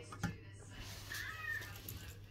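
A sharp click as the valve key of a small brass petrol camping stove is handled, then a short, high, wavering tone about a second in.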